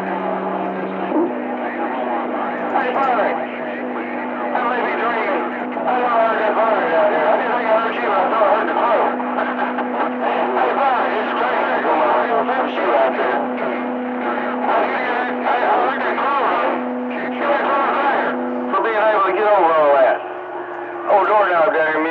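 CB radio receiver on 27.285 MHz picking up distant stations: garbled, overlapping AM voices through static, with steady low tones humming underneath. The voices drop out briefly near the end, then return.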